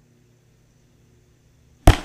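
Near silence, then a single loud, sharp bang near the end.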